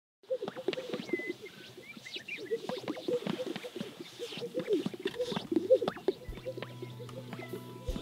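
A lek chorus of male greater sage-grouse strutting, with many overlapping popping, plopping sounds from their inflated air sacs and a few short high whistles. Music fades in near the end.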